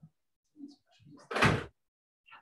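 A single loud thump about a second and a half in, lasting under half a second, after a few faint low knocks and rustles.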